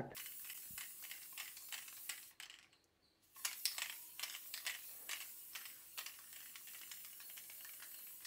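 Aerosol spray-paint can spraying grey primer onto a stripped PC case: a faint hiss with small clicks, stopping briefly about three seconds in and then starting again.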